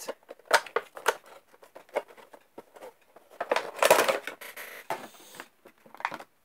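Funko Pop cardboard box with a clear plastic window being opened by hand: scattered clicks and short rustles of the flaps and packaging, then a louder, longer rustle and scrape about four seconds in as the figure and its plastic insert are pulled out.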